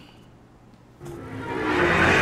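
A moment of quiet room tone, then, about a second in, a rising whooshing swell: the build-up of an outro music sting.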